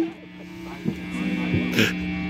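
Steady electrical hum from live electric guitar and bass amplifiers, with a few light knocks and one short, bright noisy hit near the end.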